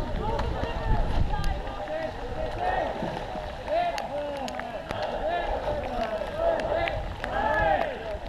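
Several people shouting and calling at once, their voices overlapping throughout, over a steady low rumble of wind on the microphone.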